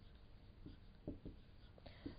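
Faint taps and scratches of a stylus writing on a screen, a few short ticks in the second half.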